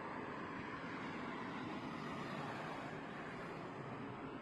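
Steady outdoor background noise, an even hiss and rumble with no distinct events.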